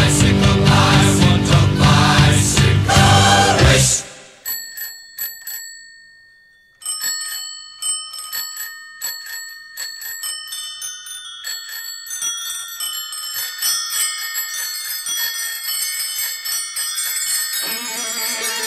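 Rock music with a heavy low end for about four seconds, then it stops and bicycle bells ring on their own: a few separate rings at first, then more and more bells overlapping. Guitar music comes back in near the end.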